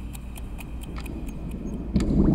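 Clock ticking: even, rapid ticks, several a second, over a low hum. A louder low thump comes at the very end.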